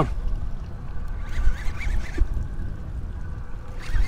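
Wind rumbling unevenly on the microphone over water lapping against the side of a small boat on open sea.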